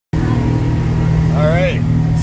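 Boat engine running steadily with a low, even hum, with a short voice sound near the end.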